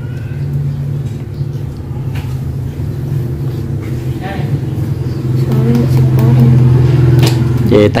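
A steady low motor hum, like an engine running, with quiet talking over it partway through.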